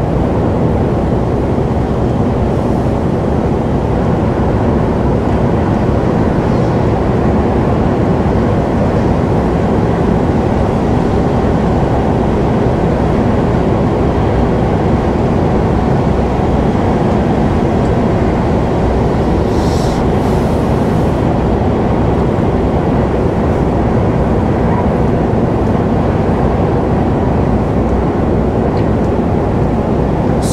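Steady in-cab drone of a Mercedes-Benz truck cruising at about 90 km/h on a wet motorway: engine and tyres on wet road, with a brief hiss about twenty seconds in.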